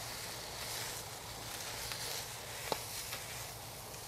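Water sizzling faintly in a steady hiss on a still-hot Blackstone steel griddle top as it is wiped with folded paper towels held in tongs, with one light click a little before three seconds in.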